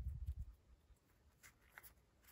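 Faint handling sounds of fingers easing the small helmet off a 1/6-scale action figure's head, taking care not to tear its liner: a dull low bump in the first half second, then a few light scratchy rubs and clicks.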